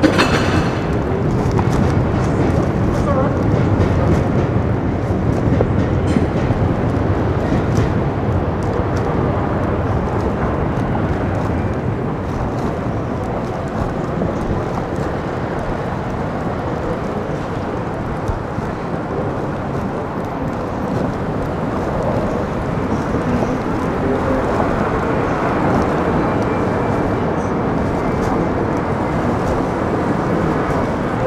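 Steady urban field recording: the low rumble of a plane passing overhead, strongest in the first several seconds, over continuous city traffic noise and indistinct voices.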